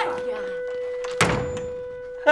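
A door is shut hard once, a sharp thud about a second in. Under it a single held musical note runs on throughout.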